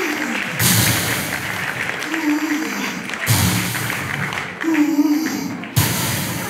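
Darth Vader's respirator breathing sound effect over the stage loudspeakers: rhythmic hissing breaths, one about every two and a half seconds, each paired with a low mechanical tone.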